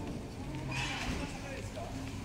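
Street ambience with the voices of passers-by speaking nearby, and a brief hiss-like burst about a second in.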